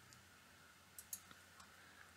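A few faint computer mouse clicks about a second in, over near-silent room tone.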